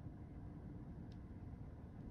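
Quiet room tone with a steady low hum, and one faint click of a computer mouse button about a second in.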